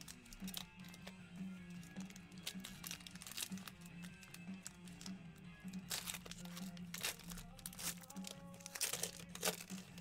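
Foil trading-card pack wrapper crinkling and tearing as it is peeled open by hand, the crackling thickest in the latter half. Quiet background music plays underneath.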